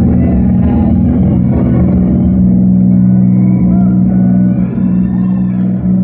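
Amplified electric guitar holding a sustained, distorted low chord through a big live sound system, with a voice over it in the second half.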